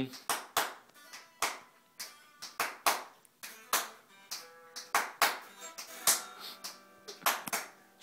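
A guitar strummed without amplification while its multi-effects unit is out of action: short, sharp chord strikes, about two a second at an uneven pace, each dying away quickly.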